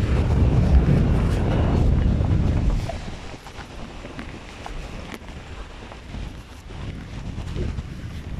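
Wind buffeting the microphone: a heavy low rumble for about the first three seconds, then dropping to a lighter, gusty rush.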